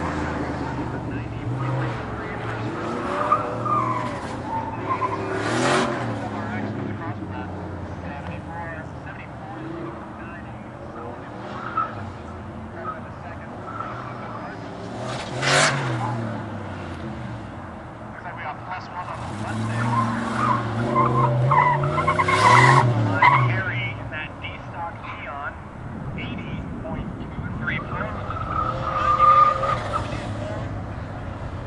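Fox-body Ford Mustang driven hard through tight turns, its engine revving up and falling back again and again, with tyres squealing in the corners. The revs and squeal are loudest about halfway through and again around twenty seconds in.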